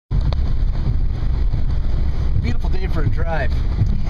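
Fiat 500 driving, heard from inside the cabin: a steady low rumble of road and engine noise. A brief voice sounds from about two and a half seconds in.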